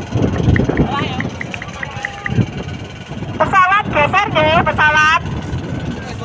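Wind rumbling on the microphone in the open air, with a small row of faint ticks early on and a voice calling out loudly in several short bursts past the middle.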